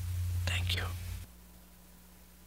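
A short breathy whisper from a person, heard over a steady low hum. The hum cuts off suddenly about a second and a quarter in, leaving only faint hiss.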